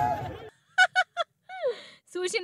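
Crowd noise cuts off about half a second in. Then come three quick honks about a fifth of a second apart, and a longer honk falling in pitch.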